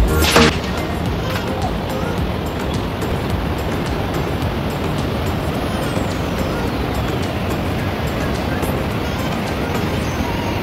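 Music cuts off about half a second in, giving way to the steady rush of a river cascading over rocks.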